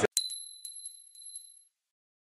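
Logo sting sound effect: a single bright, high metallic ding that rings and fades out over about a second and a half, with a few light ticks under it.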